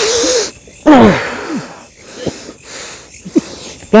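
A person's voice crying out in short, wailing cries. The loudest, about a second in, falls steeply in pitch, and a short rising cry comes near the end.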